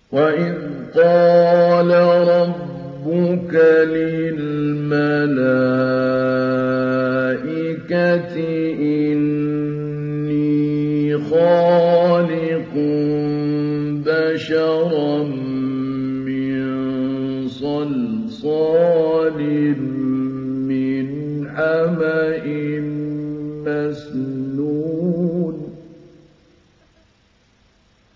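A male Egyptian reciter's voice in mujawwad Qur'an recitation: one long, slowly drawn-out phrase sung on sustained, ornamented notes that step up and down in pitch. It starts at once and fades out just before the end.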